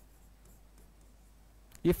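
Faint scratching and tapping of a pen writing on the glass of an interactive display board. A man's voice starts near the end.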